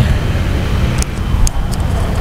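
A steady low rumble, with a couple of faint clicks about a second and a second and a half in.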